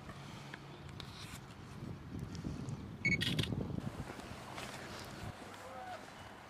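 A camera shutter firing once about halfway through: a brief high beep, then a short sharp click, over a low steady rumble.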